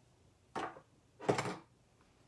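Two brief knocks of craft supplies being set down on a work table, about a second in and again just after, the second the louder.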